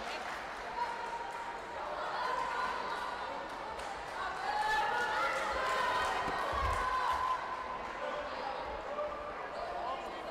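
Repeated dull thuds of bare feet on the sparring mat and kicks landing on padded taekwondo chest protectors, with a heavier thump about six and a half seconds in. Voices call out across a large, echoing sports hall.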